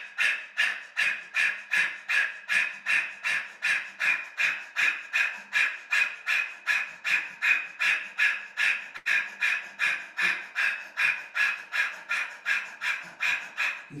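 A man's rapid, forceful breaths pushed out through the open mouth from the diaphragm, in a steady rhythm of about two and a half a second: a panting breathwork exercise focused on the exhalation.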